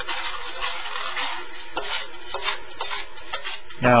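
A spoon stirring and scraping a thickening ground beef and mushroom sauce around a stainless steel skillet, with a few sharp clinks of the spoon against the pan.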